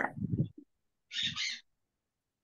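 A person's voice over a video call: a short falling sound that trails off, then a brief breathy utterance about a second later.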